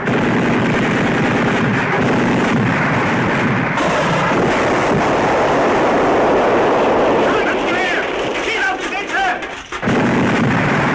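Dense, continuous battle gunfire of rifles and machine guns mixed with artillery blasts, the sound effects of a 1960s TV war drama. Shouting voices rise over the firing in the last few seconds.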